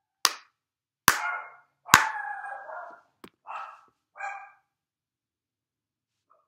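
Hand claps beating out a rhythm of quarter notes: three sharp claps a little under a second apart and a fourth a moment later. A dog barks over the second and third claps and twice more after the last.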